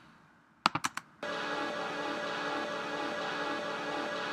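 A few mouse clicks, then from about a second in, three looped atmosphere samples from a Vengeance sample pack play together, turned up above their mix level: a steady, even pad-like texture of many held tones.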